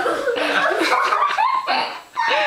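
A few people laughing together, children among them, in short bursts of chuckling.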